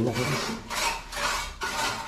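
Repeated rough scraping or rasping strokes, a little under two a second, each lasting about half a second.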